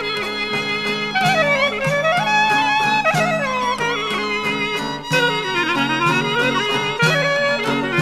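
Greek folk music played without singing: a clarinet plays a winding, ornamented melody that slides between notes, over a steady low accompaniment.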